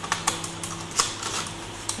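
A few light plastic clicks and knocks as a laptop's slim SATA DVD writer is handled at the edge of the chassis, the loudest about halfway through, over a faint steady hum.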